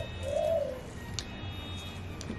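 A dove cooing once: a single soft note about half a second long, rising then falling, near the start.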